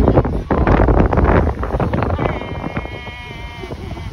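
Wind buffeting the microphone, strong at first and easing about halfway through, then a single drawn-out high-pitched call held steady for over a second.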